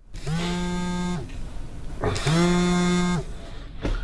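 A mobile phone vibrating with an incoming call: two buzzes of about a second each, a second apart, each sliding up in pitch as it starts and down as it stops.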